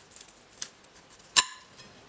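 Kitchen knife cutting through a broccoli stalk, with faint ticks, then one sharp click with a brief ring as the blade strikes the plate about one and a half seconds in.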